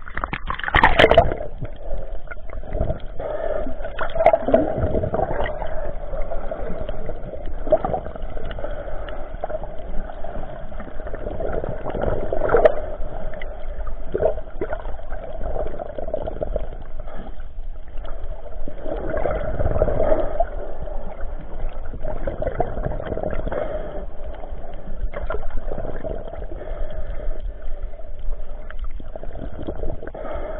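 Water gurgling and sloshing, with a steady hum underneath and irregular swells, the strongest about a second in and again around twenty seconds.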